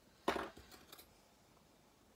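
Metal tweezers picked up off the craft mat: one sharp clack, then a few light clicks as they are handled.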